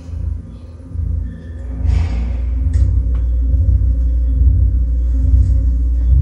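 Television sound playing bass-heavy music, a deep steady rumble with a shifting bass line, and a short hiss-like noise about two seconds in.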